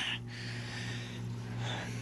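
Steady low electrical hum from running aquarium equipment, with a soft breathy rush over it in the first second or so.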